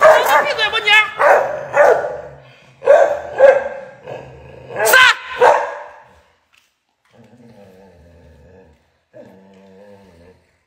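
A dog barking loudly and repeatedly, a quick run of barks that stops about six seconds in, leaving only faint low sounds.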